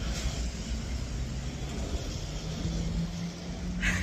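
Street traffic going by: a steady mix of engine and road noise, with a low, even engine hum coming up out of it about three seconds in.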